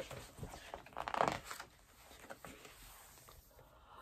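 A picture book being handled and its page turned: a cluster of papery rustles and light knocks in the first second and a half, then a few faint handling sounds.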